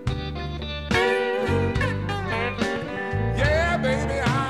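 Live blues music: a male voice singing over guitar and a steady bass line, louder from about a second in.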